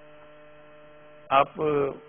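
A steady electrical hum in the recording, several even tones held without change, with a man saying one short word about a second and a half in.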